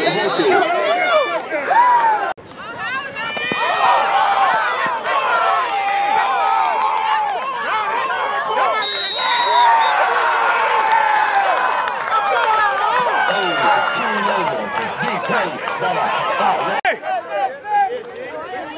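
Many overlapping voices of spectators, coaches and players shouting and talking at once, a loud crowd hubbub with no single voice standing out.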